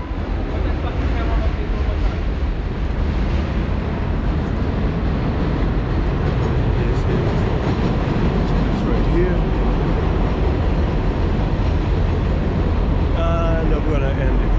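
Loud, steady city street noise with a deep rumble throughout, the kind made by traffic and the elevated train on Roosevelt Avenue. A voice comes in briefly near the end.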